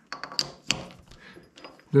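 A six-inch three-jaw scroll chuck being worked with its chuck key in the master pinion: a run of short, sharp clicks as the key turns and the jaws close on a ground steel test bar, the two loudest in the first second.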